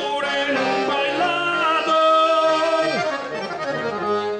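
Piano accordion playing a vaneira, the gaúcho dance music of southern Brazil, in an instrumental passage between sung verses, with long held notes through the middle.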